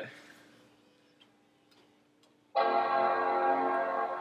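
Apple Mac startup chime: a held chord of several steady notes that starts suddenly about two and a half seconds in and begins to fade near the end, the sign of the laptops powering on during a restart. Before it, only a faint steady hum and a few light ticks.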